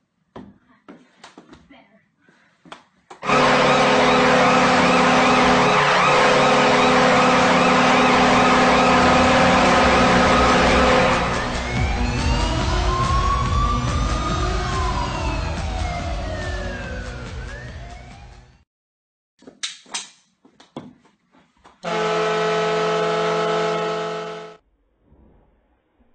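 A loud horn blast mixed with music, like an arena goal horn, that gives way to sweeping rising and falling tones and fades out; near the end a second, shorter horn blast sounds on one steady chord. Faint knocks come before each.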